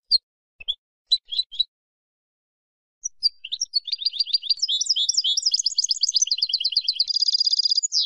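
Female European goldfinch chattering. A few short calls come first, then after a pause of about a second a fast run of twittering notes that ends in a buzzy trill.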